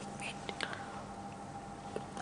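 A pause between speech: faint steady electrical hum and hiss, with a few soft clicks in the first second.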